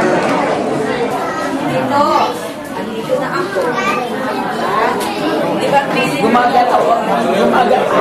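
Several people talking at once: overlapping chatter of voices, with no clear single speaker.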